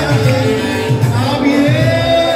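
Loud live band music with a singer over a pulsing bass beat.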